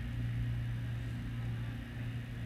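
A steady low hum with no other events.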